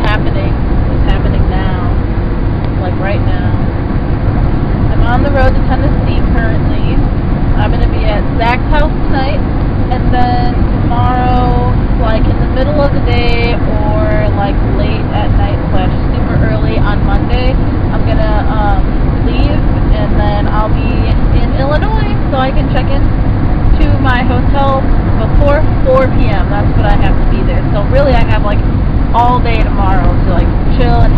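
Steady road and engine rumble inside a moving car's cabin, with a woman's voice singing along over it, some notes held long.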